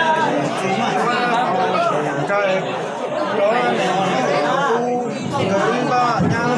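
Speech: a man talking with crowd chatter under it.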